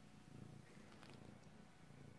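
A long-haired domestic cat purring faintly while being stroked: a low rumble that swells and fades about twice a second with its breathing.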